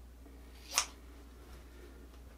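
Scissors cutting flannel fabric: one short, sharp snip a little under a second in.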